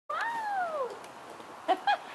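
Ring-tailed lemur meow calls: one long call that rises and then falls in pitch, followed near the end by two short, louder calls.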